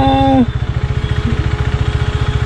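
KTM Duke's single-cylinder engine running at low revs with a steady, rapid low pulse as the bike rolls slowly. A person's brief drawn-out call sits over it in the first half-second.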